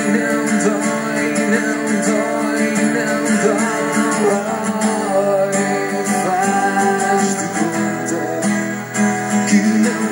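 Acoustic guitar and electric guitar playing a song together, heard through a television's speaker.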